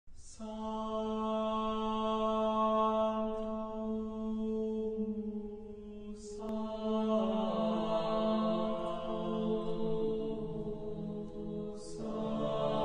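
Chanted mantra: a voice holds one long, steady note, breaks briefly about six seconds in, then holds another phrase that steps down in pitch.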